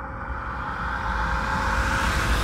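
Intro sound effect: a low rumble with a growing hiss, swelling steadily louder.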